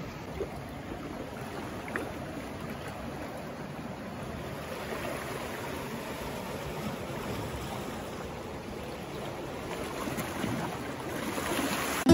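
Sea water washing and lapping against shoreline rocks, a steady even wash of small waves.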